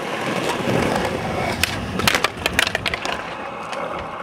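Skateboard wheels rolling over asphalt, a steady grinding roll with a run of sharp clicks and clacks about halfway through.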